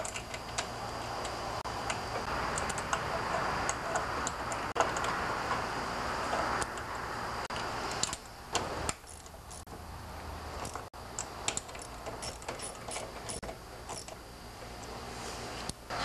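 Light metallic clicks and rattles of a hand tool and small bolts as a fuel pump is fastened back onto its bracket on a lawn tractor engine. The clicks come irregularly, with handling noise that eases about halfway through.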